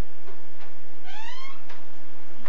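A single short, high-pitched call about a second in, rising in pitch over about half a second, with a few faint clicks around it.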